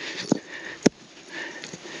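Rock hammer digging in loose weathered rock and soil: three sharp knocks in the first second, then softer scraping noise.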